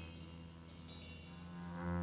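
Live free jazz: a low sustained instrument note held steady under a brief high ringing of struck metal percussion, with a louder low note coming in near the end.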